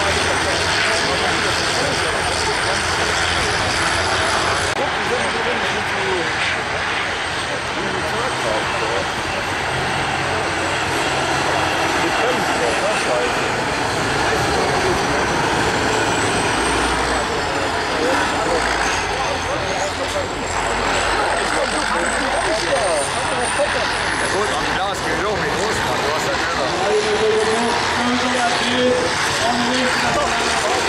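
Diesel engines of several combine harvesters racing over a dirt track: a loud, continuous mix of engine noise.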